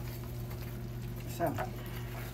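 Seasoned ground beef simmering in a stainless saucepan while a wooden spoon stirs it, over a steady low electrical hum.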